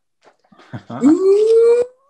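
A person's voice making one long call that slides up in pitch and then holds, cut off about a second later, with laughter starting at the end.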